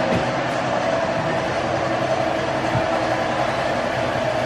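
Household refrigerator running: a steady mechanical hum with a held whining tone.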